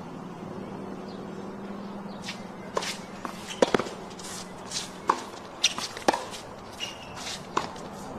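Tennis rally sounds: a series of sharp ball strikes and bounces starting about three seconds in, with short shoe scuffs on the court between them. A low steady hum runs underneath and stops about six seconds in.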